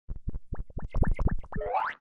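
Cartoon sound effects for an animated logo intro: a quick run of about ten short, bouncy pitched pops, then a sweep rising in pitch that cuts off abruptly.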